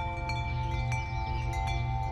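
Background music: a steady held drone with wind chimes tinkling over it in light, scattered strikes.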